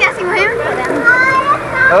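Children talking and calling out in high voices.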